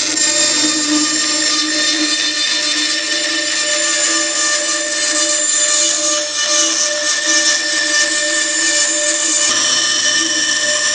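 Bandsaw running steadily with a high whine, its blade cutting a curved radius through maple plywood.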